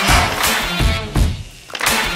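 Background music with a steady beat, dipping briefly about one and a half seconds in.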